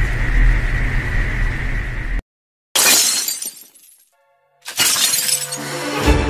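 Logo-intro sound design: a steady hiss of TV static with a thin high tone and a low hum, cut off abruptly about two seconds in. After a short silence a sudden crash dies away to silence, then a second hit near the end leads into a music sting.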